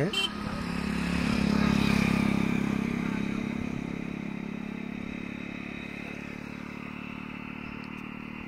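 A motor vehicle's engine passing close by, growing louder for about two seconds and then slowly fading away.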